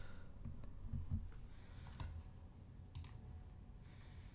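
A few faint computer mouse clicks, about a second apart.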